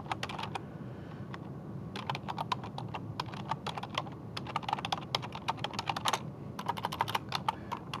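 Typing on a computer keyboard: quick runs of keystrokes, with a pause of over a second near the start.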